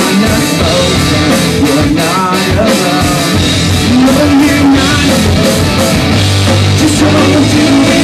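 Live rock band playing a song at full volume: electric guitars, bass and a drum kit, heard from the audience in a small club.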